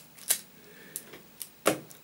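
About five light plastic clicks and knocks as a LEGO Technic wheel loader model is handled on a wooden table, the loudest near the end.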